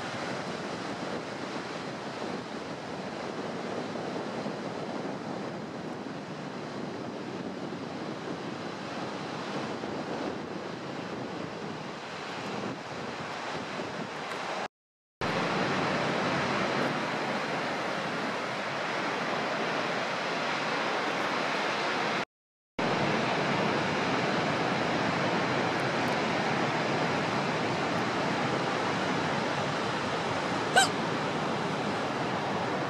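Steady rush of ocean surf mixed with wind on the microphone. It drops out to silence twice, briefly, about halfway through and again about three-quarters through.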